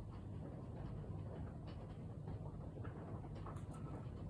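Faint steady low room hum with scattered soft clicks and taps as paint tools are handled over the canvas, a few clustered near the end.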